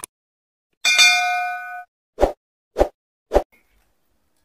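Subscribe-button animation sound effects: a click, then a bell-like ding that rings for about a second, then three short pops about half a second apart.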